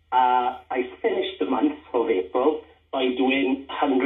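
Speech only: conversation from a radio broadcast, thin and cut off in the treble like a telephone line.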